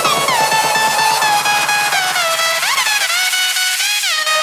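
Background electronic music: a synth lead melody that steps and glides up and down in pitch, with the bass dropping away in the second half.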